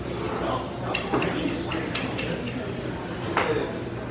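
Dishes and cutlery clinking and clattering, with a murmur of voices behind. There are several sharp clinks, about one, two and three and a half seconds in.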